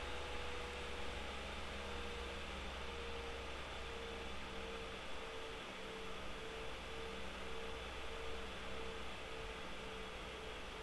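Room tone from an open microphone: steady hiss and a low electrical hum, with a faint tone that starts pulsing about one and a half times a second a few seconds in.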